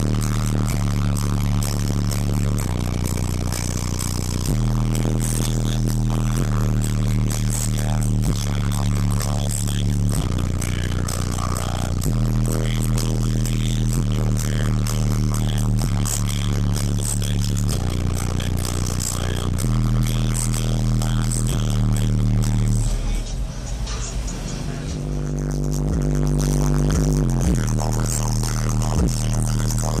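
Bass-heavy music played loud through a car audio system of twelve 12-inch JBL subwoofers in a fourth-order bandpass enclosure. Long, deep bass notes change pitch every second or two. The bass drops away for a couple of seconds near the end and then comes back.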